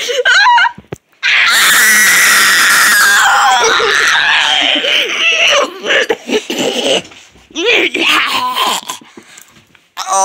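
A person screaming: one long, loud, high-pitched shriek starting about a second in and lasting about four seconds, followed by shorter cries near the end.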